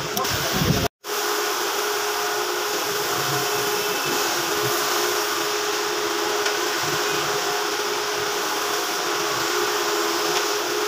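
Steady machine whirring with a constant hum. It is broken by a split-second cut to silence about a second in.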